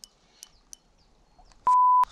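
A single electronic beep: one steady high tone lasting under half a second near the end, loud, with the other sound cut out beneath it.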